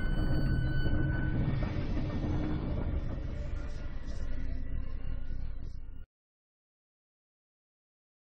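Cinematic intro sound effect for heavy doors opening: a low, dense rumble with a few faint steady tones over it, cutting off suddenly about six seconds in.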